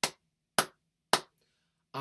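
One person clapping hands slowly, three single claps about half a second apart.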